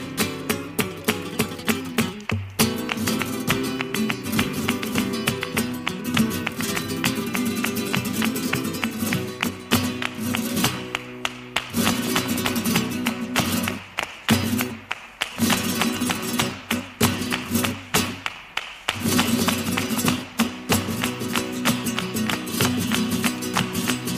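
Flamenco guitar playing under the dancer's zapateado: heeled shoes striking the floor in a dense, rapid run of sharp taps, with a few short breaks in the second half.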